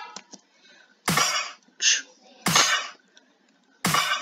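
Clap sample playing back from a step-sequenced pattern in FL Studio: three loud, sharp claps about 1.4 s apart, with a quieter, brighter hit between the first two.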